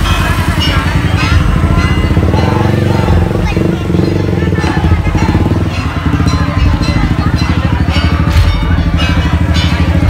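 Loud street-parade din: rhythmic ul-daul percussion music over a crowd's voices, with motorcycle engines running close by.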